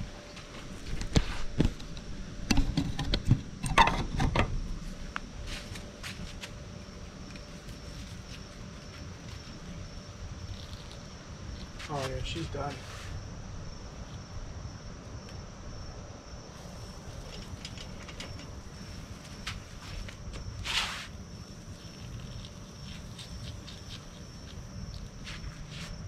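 A few knocks and handling bumps in the first seconds as the camera is set down, then quiet outdoor ambience dominated by a steady high-pitched insect drone.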